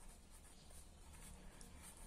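Faint scratching of a felt-tip pen writing on notebook paper: several soft, short strokes over near silence.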